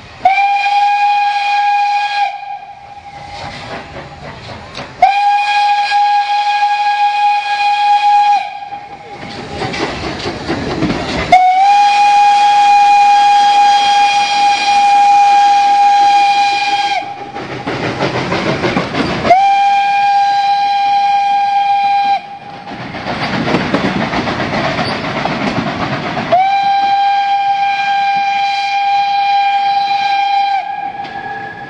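Steam locomotive whistle blown five times on one steady high note, the middle blast the longest at about six seconds. Between the blasts come steam hissing and the running noise of the locomotive and coaches as the train moves off.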